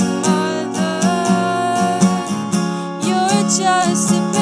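Steel-string acoustic guitar strummed in a steady rhythm, with a woman singing over it, her voice most prominent in the second half.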